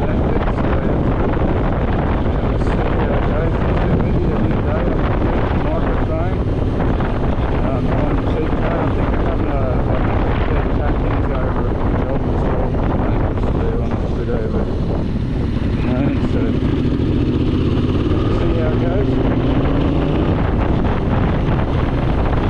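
Heavy wind buffeting and the running motorcycle engine on the road, picked up by the action camera's own built-in microphones rather than the Bluetooth helmet mic, so the wind noise dominates.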